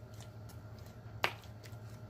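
Close-miked chewing of a corn dog, with a few short wet mouth clicks and one sharp lip smack just past a second in, over a low steady hum.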